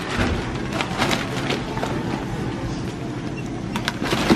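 Checkout-counter noise: a steady low hum with scattered clicks, knocks and rustles as goods and bags are handled.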